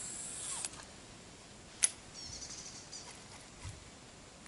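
Baitcasting reel after a cast: the spool whirs as the line pays out and stops abruptly about half a second in. A single sharp click comes near the middle as the reel is engaged, then the reel's gears tick briefly as the retrieve begins.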